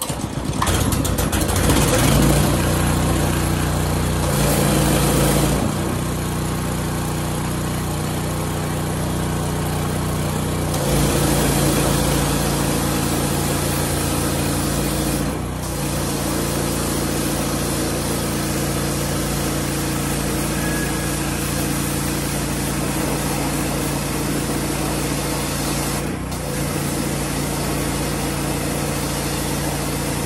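Ryobi gas pressure washer's 212 cc single-cylinder engine pull-started, catching at once and running steadily, with the hiss of the high-pressure water jet striking a wooden deck. The level swells and drops a few times, with two brief dips, one about halfway and one near the end.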